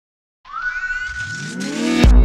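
Silence for about half a second, then a synthesized riser: a whooshing sweep with several tones gliding upward and a held high tone, growing louder toward the end as it builds into a logo sting.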